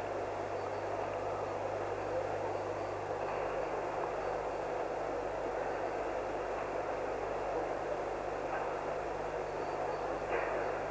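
Steady crowd noise in a large gymnastics arena, an even wash without distinct claps or voices.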